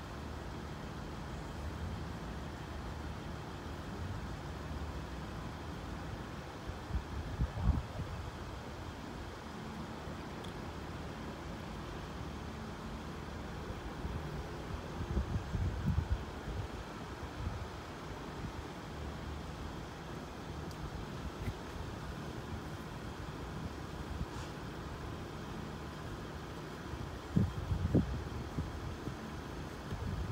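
Steady low background rumble of road traffic at a level crossing with the barriers down, with no crossing alarm or train heard. Three brief louder low rumbles stand out, about a quarter, half and nine-tenths of the way through.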